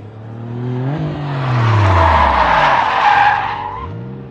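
Sports car pulling up: the engine revs rise for about a second, then fall away as it brakes, under a long tyre squeal that is the loudest part, in the second half. A second engine starts revving up right at the end.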